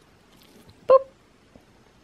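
A dog giving one short, loud bark about a second in, with faint rustling around it.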